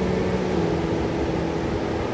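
Steady rushing noise of wind on the microphone and surf on the beach, with a few faint held low tones underneath.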